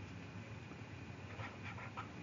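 Faint scratching of a stylus writing on a pen tablet, a few short strokes near the end, over low background noise.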